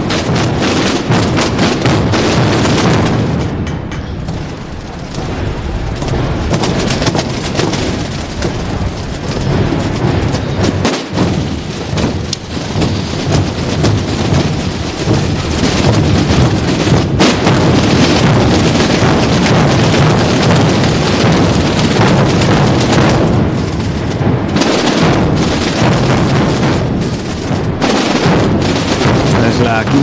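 Procession drum corps: large bass drums (bombos) and other drums beaten together in dense, unbroken massed drumming.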